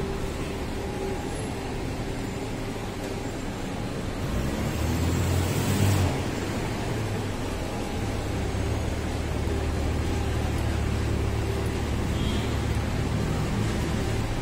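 Street traffic: car engines running as vehicles pass. One vehicle passes louder about four to six seconds in, and a low engine rumble holds through the second half.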